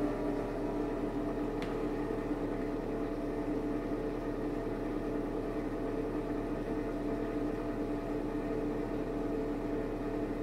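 Steady hum of an electric motor running throughout, holding a few steady tones, with one faint click a little under two seconds in.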